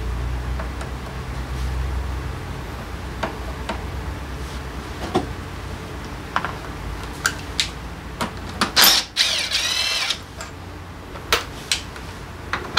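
Scattered metal clinks and knocks of hand tools against a scooter's rear brake caliper, then, about nine seconds in, a Keyang cordless driver's motor whirring up and down for a second or so. A low hum stops about two seconds in.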